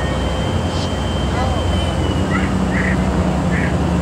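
Steady low rumble of diesel engines, from the towboat pushing barges and the freight train's locomotives, with a faint thin high tone that fades out about halfway through and a few short chirps above it.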